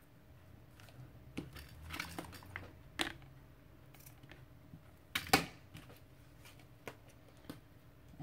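Light clicks and rustles of hands handling craft tools and trim on a tabletop, rummaging through a pile of scissors and paper strips. The sharpest clicks come about three seconds in and a louder pair just past five seconds.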